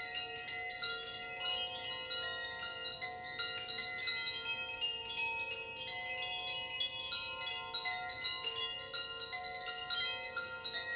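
Wind chimes ringing: many clear metal notes, struck at irregular moments, overlapping and ringing on.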